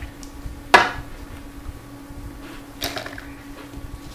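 Handling noise from a paper tube with a small metal binder clip: one sharp knock a little under a second in, then a softer knock with a brief rattle near three seconds, over a steady low hum.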